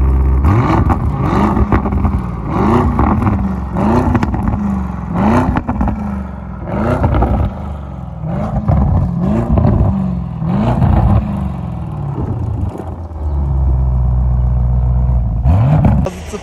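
Lamborghini Urus S's twin-turbo V8 exhaust being revved while parked: a series of quick throttle blips, about one a second, each rising and falling in pitch. Near the end it settles to a steady idle.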